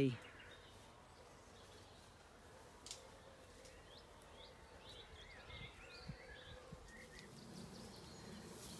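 Quiet outdoor ambience with faint birdsong: short chirping calls come in from about three seconds on. A single sharp click sounds near three seconds, and a few soft low thumps follow.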